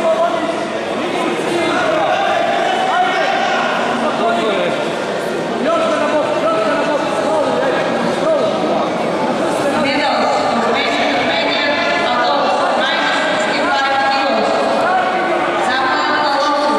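Several people's voices talking and calling out over one another without a break, heard in a large sports hall.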